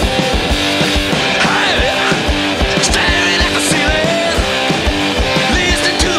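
Hard rock band recording playing loud and fast: electric guitars over bass and a steady pounding drum beat, with some bent guitar notes.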